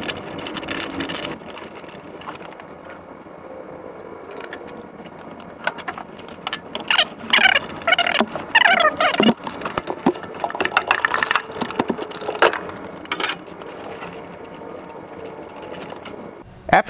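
A ratchet and 26 mm socket clicking and clinking on metal as the oil pressure switch is loosened and unscrewed from a 1999 Honda CR-V engine block. Irregular clicks and knocks through the middle, with a few short squeaks about halfway.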